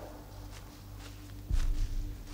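Footsteps on the forest floor, a few light steps and one heavier footfall about one and a half seconds in, over a low steady drone.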